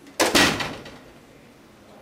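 Wooden office door shutting with a sudden thud that dies away within about half a second.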